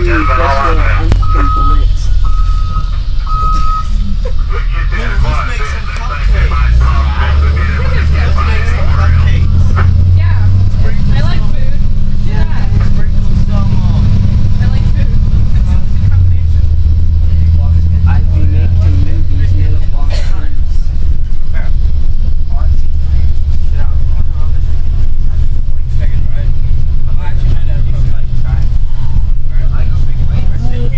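School bus engine and road noise heard from inside the cabin, a loud, steady low rumble, with passengers talking in the background. A few short high beeps sound in the first few seconds.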